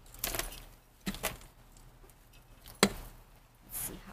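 Hands working a plant's root ball and potting soil over a plastic potting tray and metal bucket planter: a few sharp knocks, the loudest nearly three seconds in, and a short rustle near the end.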